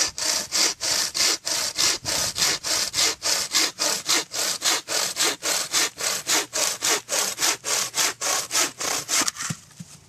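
Bow saw blade cutting through a wooden branch by hand, with rapid, even back-and-forth strokes. The strokes stop shortly before the end as the branch is cut through.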